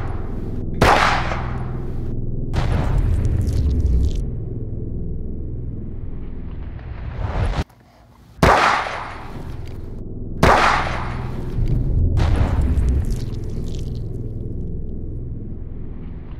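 9mm pistol shots: five sharp reports, each followed by a long rolling echo that fades over a second or two. They come in two groups, split by a brief drop-out near the middle.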